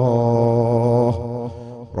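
A man's voice chanting, holding one long note with a slight waver, which fades out a little over a second in.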